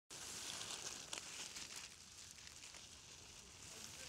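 Faint outdoor wind noise with light rustling and crackling, a little louder in the first two seconds.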